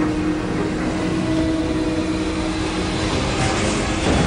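A dense, steady low rumble with a held low tone under it. A rising whoosh builds near the end.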